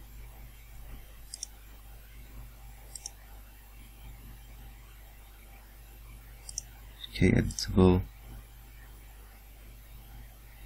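Computer mouse clicking three times, light and sharp, then a short wordless voice sound a little past halfway that is louder than the clicks.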